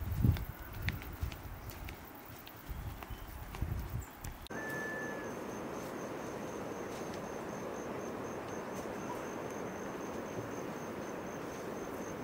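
Irregular low thumps of footsteps on a dry dirt path. About four and a half seconds in, the sound changes abruptly to a steady outdoor hiss with an insect trilling high in rapid, even pulses.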